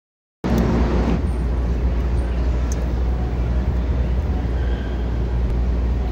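Steady outdoor street noise with a deep low rumble, typical of traffic and wind heard from a moving bicycle. It starts suddenly about half a second in after a moment of silence.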